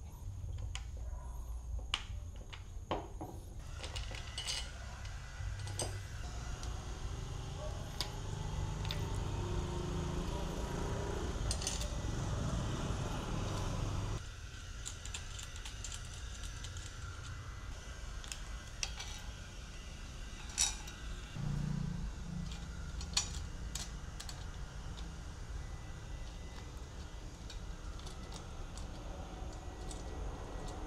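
Small metal parts clinking and tapping now and then over a low steady hum: bolts, washers and a steel bracket being handled while a top-box mounting plate is fitted to a motorcycle rack.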